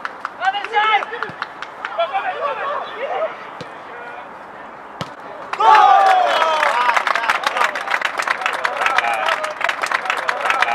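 Footballers calling to each other on the pitch, a single sharp kick of the ball about five seconds in as the shot goes in, then loud shouts of celebration and rapid hand clapping after the goal.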